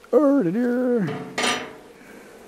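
A man's voice holding a wordless, hummed note for about a second, with a dip in pitch partway through, followed by a short hiss about one and a half seconds in.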